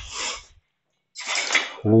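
Two short, sharp breaths with a hissing quality, one right at the start and one just before the next count.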